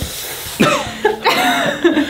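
A short breathy hiss from a person's mouth, then bursts of laughter that grow louder near the end.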